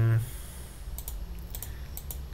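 A few light computer keyboard keystrokes, clicking in a short cluster from about a second in, after the tail of a spoken "um".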